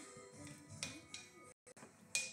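A wooden stick pressing sand down in a glass vase gives two sharp clicks about a second in, over faint background music.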